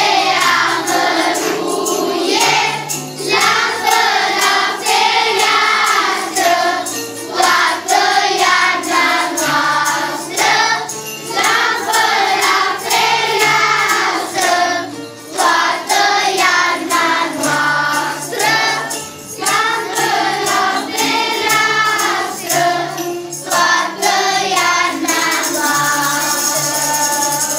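Children's choir with young women singing a Romanian Christmas carol (colind) together, in continuous phrases with short breaths between them.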